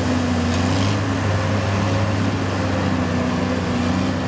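Bobbed military truck's engine running steadily under load as the truck drives through and out of a mud hole, its pitch drifting only slightly.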